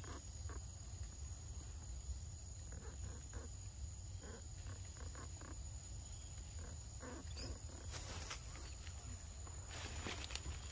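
Quiet forest ambience while a macaque eats fruit on a branch: scattered soft clicks and rustles over a steady low rumble and a thin, steady high tone. A louder brief rustle comes about eight seconds in.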